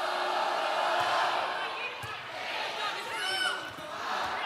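Arena crowd noise, a steady din of many voices from the stands, with a sharp ball strike about two seconds in as the serve is hit. A brief run of high-pitched squeaks follows about a second later.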